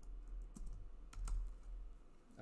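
Computer keyboard typing: a few separate keystroke clicks at an uneven pace.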